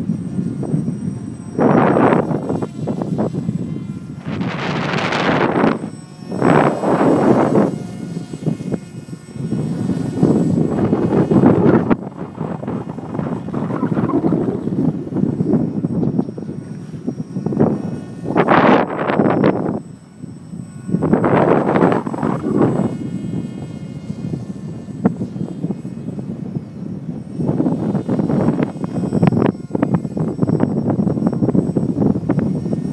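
Gusting wind buffeting the microphone in repeated loud surges, over the faint steady whine of a foam flying wing's electric motor and propeller in flight.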